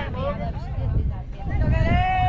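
Voices of people at a baseball game calling out, with a long drawn-out shout starting near the end, over a steady low rumble.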